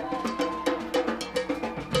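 Live rock drumming on a drum kit and hand percussion: a steady pattern of strikes, about four or five a second, with a repeated hollow, wood-block-like knock.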